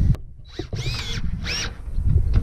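Cordless drill cranking down a travel trailer's scissor stabilizer jack in two short bursts, the motor whine rising and falling each time.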